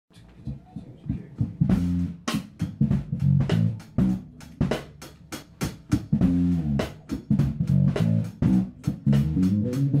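A funk band playing live: two electric guitars, electric bass and drum kit in a groove, with a prominent moving bass line and sharp drum hits. It opens quieter and the full band is in by about two seconds in.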